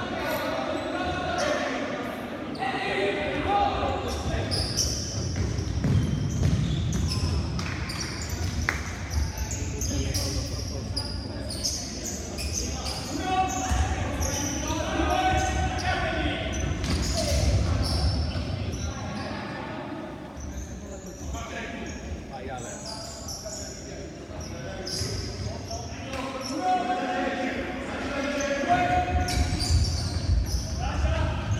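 Futsal ball being kicked and bouncing on a wooden sports-hall floor: repeated short sharp impacts at irregular intervals, with players calling out, all echoing in the large hall.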